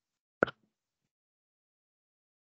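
A single short pop about half a second in.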